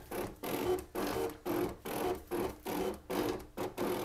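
Cricut Expression electronic cutting machine running as it cuts a butterfly shape from black cardstock. Its motors whir in short, rhythmic stops and starts, about two or three a second, as the blade carriage and mat move back and forth.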